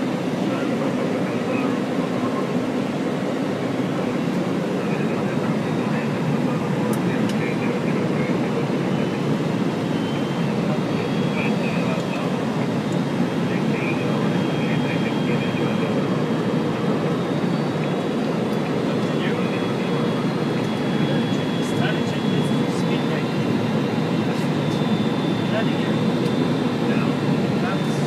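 Steady drone of a small airplane's cockpit in flight: engine and airflow noise, unchanging throughout.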